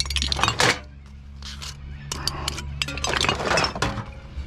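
Glass wine bottles clinking against other bottles and cans as they are handled and sorted in a crate: a few sharp clinks near the start, more in the middle, and a busier run of clinks in the last second, over a steady low hum.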